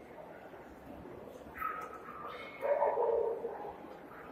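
A dog barking twice over the steady background noise of a crowded hall: a shorter call about a second and a half in, then a louder, longer one near three seconds in.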